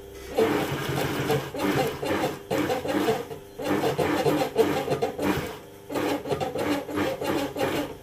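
Industrial sewing machine stitching a curved seam through a thick seat-cover panel in about six short runs. It stops briefly between runs while the piece is turned a little around the curve.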